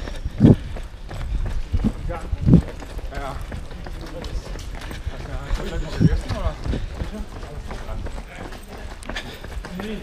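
A runner's footfalls on pavement picked up by a handheld action camera, with several low thumps and a steady low rumble of movement and wind on the microphone.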